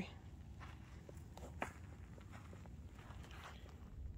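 Faint footsteps on dry, loose soil, with a few soft ticks and one sharper one about a second and a half in, over a low steady rumble.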